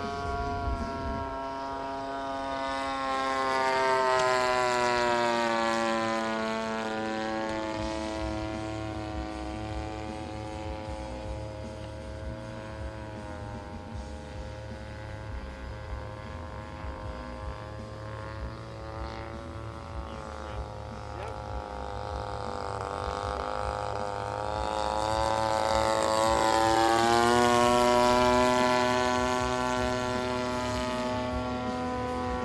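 VVRC 20cc gasoline twin engine of a Robin Hood 80 model airplane running in flight. It grows louder twice as the plane passes close, about four seconds in and again near the end, its pitch dropping after the first pass and climbing as the second approaches.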